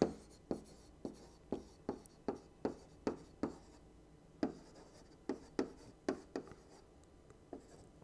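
Stylus writing on a digital tablet: a string of sharp little taps and clicks, two or three a second, as the pen strokes go down, with a short pause about halfway through.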